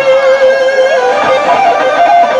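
Live electric guitar solo: a single note held with a slight vibrato through most of it, with gliding bent notes falling above it early on and quicker higher notes near the end.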